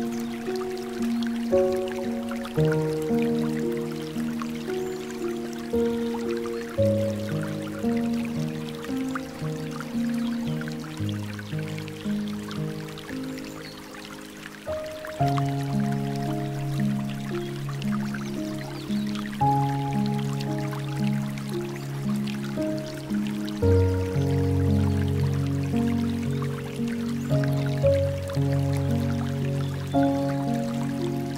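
Slow, soft piano music with notes that strike and fade, over a faint background of trickling, dripping water. The music thins out briefly a little before the middle, then fills out again with deeper notes toward the end.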